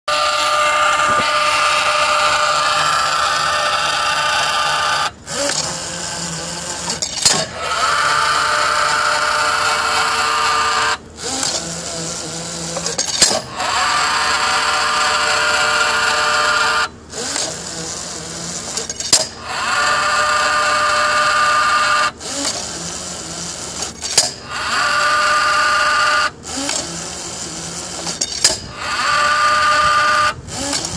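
Electric gear motors and chain drive of an uncovered rod-driving rig running in repeated cycles. Each cycle is a loud, steady whine lasting about four seconds, then a quieter stretch of about two seconds ending in a click, repeating about every six seconds.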